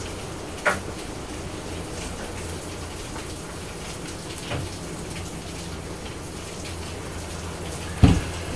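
Steady hiss of rain, with a low hum under it and a single light tap less than a second in.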